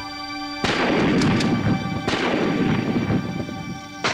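Two gunshots about a second and a half apart, each followed by a long echoing rumble, over a faint steady music drone.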